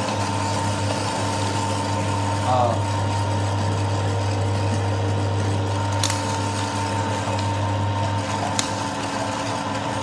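Commercial electric meat mincer running steadily with a low, even motor hum as beef knuckle trim is fed through it and extruded as regular mince.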